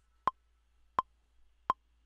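Software metronome count-in in Maschine: three short, evenly spaced clicks about 0.7 s apart, matching the 84 BPM session tempo, counting in before a pattern is recorded.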